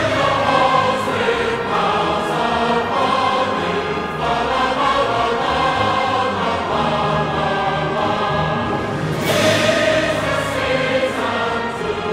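Background music of a choir singing long, held chords.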